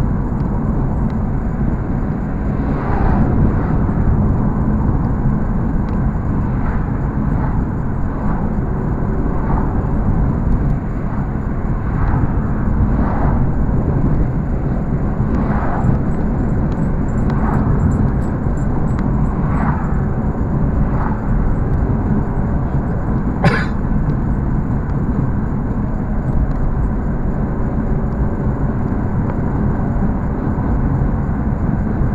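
Steady road and engine noise of a car driving at speed, heard inside the cabin, with brief swishes every second or two and one sharp click about three-quarters of the way through.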